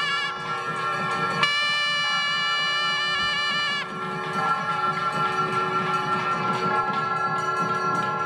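Nadaswaram temple music over a steady drone: a long held note rises in about one and a half seconds in and ends just before four seconds, and the drone carries on under quieter ornamented phrases.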